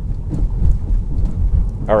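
Low, steady rumble of road and tyre noise inside a moving car.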